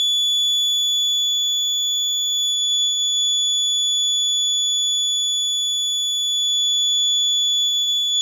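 Piezo alarm buzzer on an Arduino accident-detection board sounding one loud, steady, high-pitched tone without a break: the board's accident alert.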